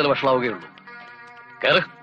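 A man's voice speaking in the first half second and briefly near the end, over film background music of held, steady notes.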